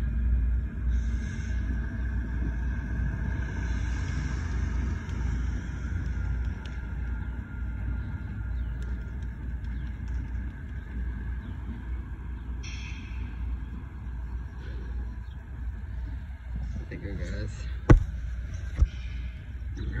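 GO Transit commuter train pulling away, a low steady rumble that slowly fades as it recedes down the line. A single sharp click comes near the end.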